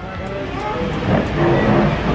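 Murmur of many overlapping voices in a busy restaurant, over a steady low rumble; no single voice stands out.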